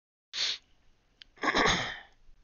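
A person sneezing: a short sharp breath in about a third of a second in, then the loud sneeze itself about a second and a half in.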